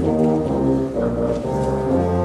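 Symphonic concert band playing live, with sustained brass chords over a bass line from the tubas that moves to a new note about every half second.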